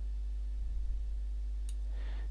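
Steady low electrical hum on the recording, with a single faint computer-mouse click near the end as a tone-curve slider is set.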